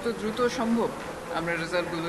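A woman speaking into microphones. Near the end, one syllable is held at a steady pitch.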